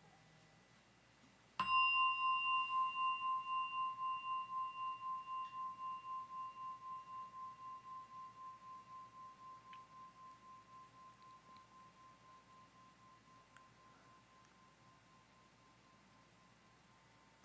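A meditation bell struck once, about a second and a half in, then ringing on with a pulsing, wavering tone that slowly fades away over about twelve seconds.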